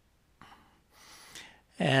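A man's breath drawn in audibly before he speaks, after a near-silent pause with a faint click; speech starts near the end.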